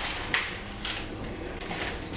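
Hands laying shredded roast chicken onto toast on a paper towel: a few light clicks and taps, the sharpest about a third of a second in.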